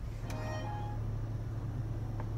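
Steady low rumble of a car's cabin, with a few sustained musical notes fading out within the first second.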